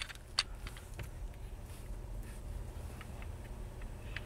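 A few faint clicks from a Glock 42 pistol being handled, its slide being worked by hand, over a low steady hum.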